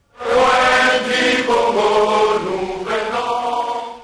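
A group of voices singing together in chorus, on long held notes; it cuts in at the start and fades out near the end.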